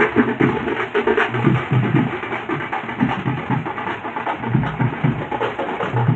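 Band of large bass drums on wheeled stands and smaller drums beaten with sticks, playing a steady street-procession beat.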